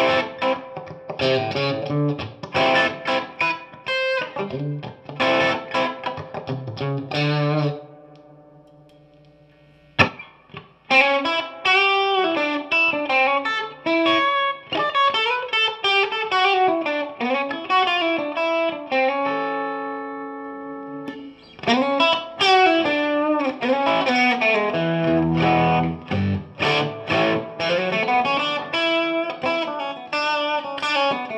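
DGN Terrapin neck-through electric guitar played through an amplifier: quick single-note runs and chords. About eight seconds in a chord is left ringing and fades away, a sharp click comes at about ten seconds, and the playing picks up again with a few held notes near the middle.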